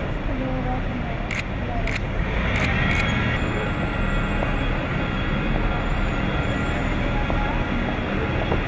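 Camera shutters clicking, four sharp clicks in the first three seconds, over steady airport apron noise: the low running of vehicle and aircraft engines, with voices murmuring.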